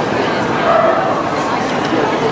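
A dog barking briefly, about half a second in, over the steady chatter of a crowd.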